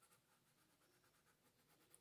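Near silence, with very faint scratching of a coloured pencil shading back and forth on paper.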